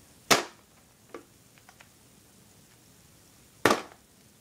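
Two sharp clacks of hard objects knocking together, about three seconds apart, with a few light clicks between them.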